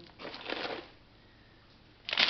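A clear plastic bag of bread rolls rustling and crinkling briefly as it is grabbed and lifted.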